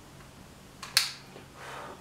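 A sharp click about a second in, with a fainter click just before it, followed by a brief soft hiss.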